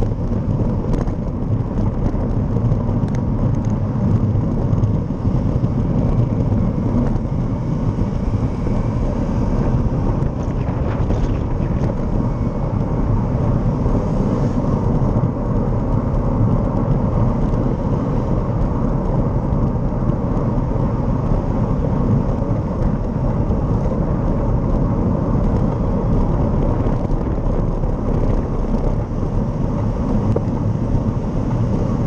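Steady low rumble of wind on the microphone of a camera moving through traffic, mixed with road and passing-vehicle noise.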